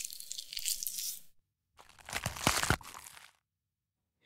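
Foley crunching and tearing in two stretches, the first about a second long, the second about a second and a half with a few sharp cracks.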